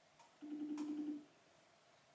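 A phone's outgoing-call ringing tone: one steady tone lasting under a second, from a call that goes unanswered.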